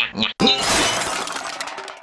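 A sudden shattering crash, like glass breaking, about half a second in, followed by crackling debris that dies away over about a second and a half.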